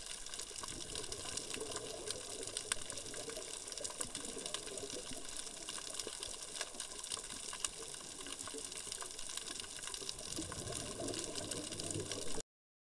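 Underwater sound picked up by a diver's camera during a scuba dive: a steady watery rush with many small sharp clicks and crackles scattered through it.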